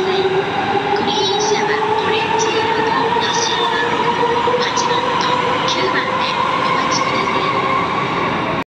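E257 series electric multiple unit pulling away, its traction motor whine rising slowly in pitch as it gathers speed, over the rumble of the cars running past on the rails.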